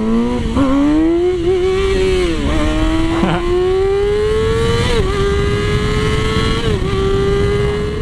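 2007 Yamaha R6 inline-four sport bike engine with a GYTR exhaust, accelerating hard under throttle: its pitch climbs, drops briefly about two and a half seconds in, then rises steadily again. Wind rush runs underneath.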